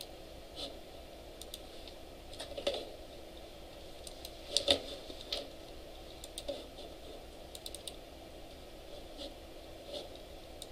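Computer keyboard and mouse in use: a dozen or so scattered keystrokes and clicks, some in quick clusters with pauses between, over a faint steady hum.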